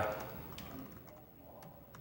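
Faint, scattered keystrokes on a laptop keyboard as code is typed.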